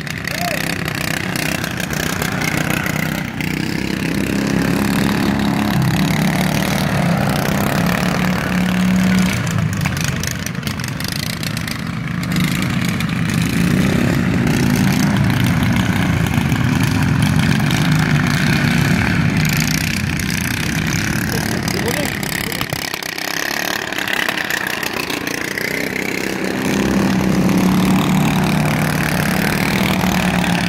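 Small engines of several racing lawn tractors running hard, swelling louder as they come close and fading as they move away around the course, loudest near the end as one passes right by.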